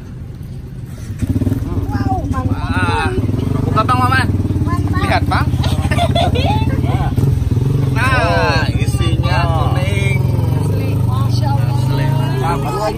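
A vehicle engine running at a steady idle close by, cutting in sharply about a second in. Voices talk over it.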